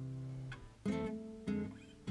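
Background acoustic guitar music: a strummed chord rings and fades, then two more chords are struck about a second and a second and a half in.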